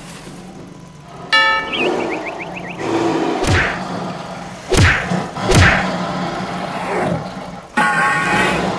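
Dubbed cartoon fight sound effects: a buzzy tone with a quick warble about a second in, then three sharp whack-like punch hits, each with a short falling swish, over a low steady hum.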